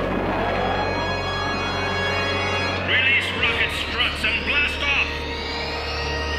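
Ominous orchestral cartoon score with a long, slowly rising whine sound effect. Between about three and five seconds in, a villain's high, evil laugh in quick repeated pulses rises above the music.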